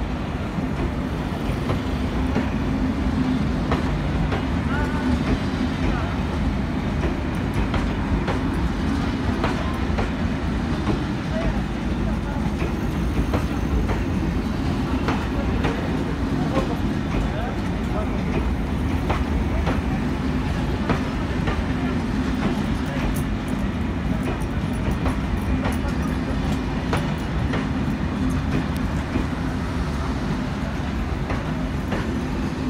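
Corail passenger coaches rolling past at departure: a steady, loud rumble of wheels on the track, with a scatter of light clicks throughout.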